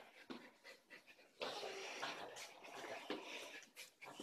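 A small dog panting, with a few light knocks as plastic toy bowling pins are set upright on the floor.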